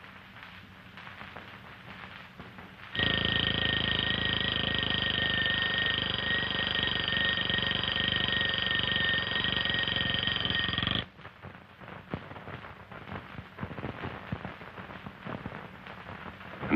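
Mechanical bell alarm clock ringing with a fast metallic rattle. It starts suddenly about three seconds in and cuts off abruptly about eight seconds later.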